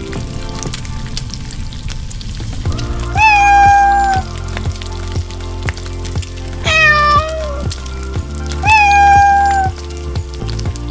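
A cat sound effect meowing three times, each call about a second long, over background music.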